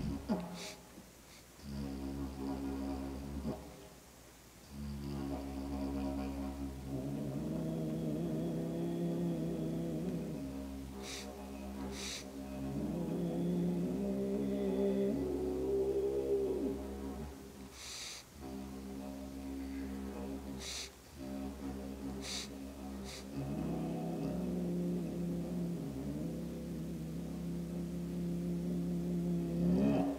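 Didgeridoo drone, one low note with overtones that shift and swell as it is played. It breaks off briefly and restarts several times, which the player puts down to the instrument being cold.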